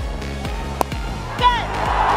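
Background music with a steady low bass line under a cricket broadcast, and a single sharp crack of a cricket bat striking the ball just under a second in.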